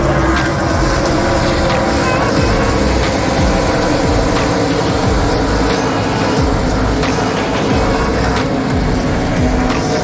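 NASCAR Truck Series race trucks' V8 engines running at speed on the track, mixed with background music that has a steady beat.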